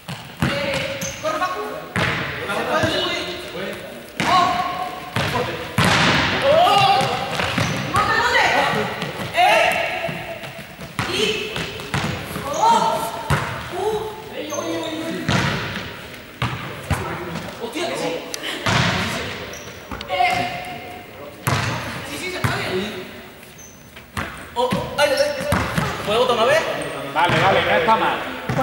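Players shouting and calling out vowels as they strike a ball back and forth, with repeated sharp ball hits and bounces on the gym floor and running footsteps, echoing in a large sports hall.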